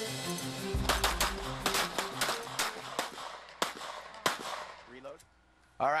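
A string of irregular gunshots, about a dozen over some four seconds, laid over a news theme that fades out partway through.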